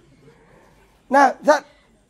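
A dog barking twice in quick succession, about a second in.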